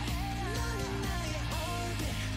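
Pop-rock K-pop song playing, with boy-band vocals singing a melody over guitar.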